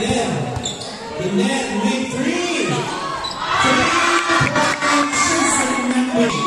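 A basketball being dribbled and bouncing on a concrete court, with several sharp bounces, under steady shouting and chatter from spectators.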